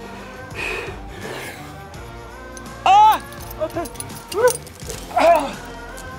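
A rock climber straining on a hard move: a heavy breath, then loud strained shouts of effort about three and five seconds in, with shorter cries between, over background music.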